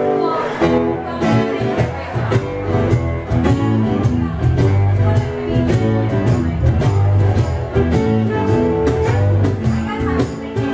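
A small live blues band playing: electric bass line, strummed acoustic guitar, cajon beat and saxophone, at a steady full volume.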